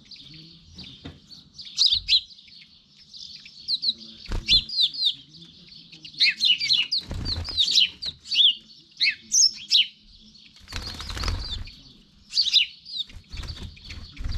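House sparrows chirping over and over in short, quick calls, with a few brief bursts of wingbeats as birds fly onto and off the balcony, the longest about 11 seconds in.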